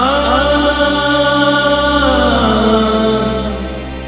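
Background score: a singer's wordless 'aa' vocal line over a steady low drone. One long held note that glides down about two seconds in and fades toward the end.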